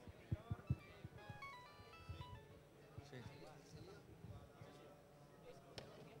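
Faint ambience of a crowded hall: a murmur of distant voices, with a short tune of stepped electronic beeps about a second in and a few low knocks near the start.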